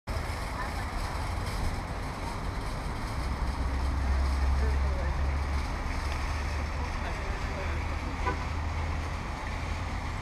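Wind buffeting the camera microphone outdoors, giving an uneven low rumble that swells for a few seconds in the middle, over faint open-air background noise.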